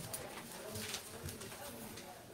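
Faint, indistinct murmured voices in a meeting room, with a few small knocks and clicks of people moving about.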